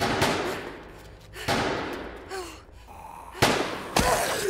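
Three sudden loud bangs, each trailing off in a long echo.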